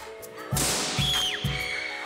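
Air rushing out of a released inflated balloon, a sudden hiss about half a second in, then a high squealing whistle that slides down in pitch, over background music with a steady beat.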